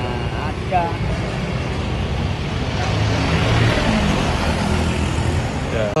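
Street traffic passing close by: motor vehicles running past with engine hum and tyre noise, one passing loudest through the middle.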